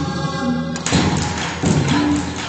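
A live ensemble playing Taiwanese aboriginal music, with two heavy percussive thuds in the second half, less than a second apart.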